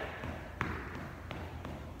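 Footfalls of a person jogging in place on a hardwood gym floor: light, evenly spaced thuds, one about half a second in standing out.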